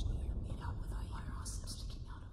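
Whispering voice over a low rumble that slowly dies away.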